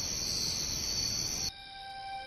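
A steady chorus of crickets chirping, typical of a night-time sound effect. It cuts off abruptly about one and a half seconds in, and soft music with long held notes takes over.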